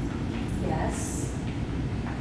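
Steady low background rumble, with a short soft hiss about a second in.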